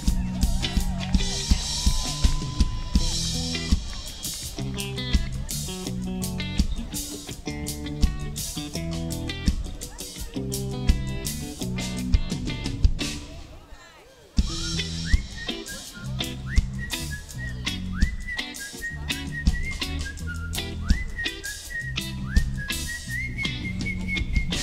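A live rock band playing the instrumental opening of a song: electric guitar, bass guitar, drum kit and congas in a steady groove. About fourteen seconds in the band drops out briefly, then the groove comes back with repeated short rising high notes over it.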